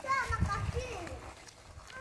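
Faint background voices talking, at least one high-pitched like a child's, mostly in the first second, with a brief high vocal sound near the end.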